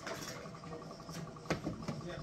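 Portable bucket milking machine running on a cow, with a steady, rhythmic mechanical pulsing. A couple of sharp knocks come in the second half.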